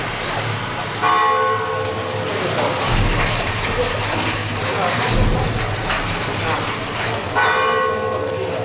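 A ringing, bell-like metallic tone sounds twice, about a second in and again near the end, each fading over about a second. It sits over steady street bustle and voices.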